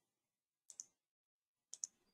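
Computer mouse clicking faintly: two quick double clicks, the first about two-thirds of a second in and the second near the end.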